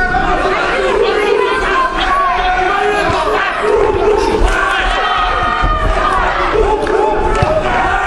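Boxing crowd shouting and yelling, many voices at once, in a large hall.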